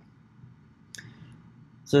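A single light click from a computer mouse or keyboard about a second in, over faint low room hiss; a man starts speaking right at the end.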